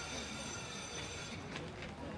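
1936 Düwag tramcar (ex-Rheinbahn No. 107) running slowly toward the listener, its wheels squealing on the rails with a thin high whine that fades out about one and a half seconds in.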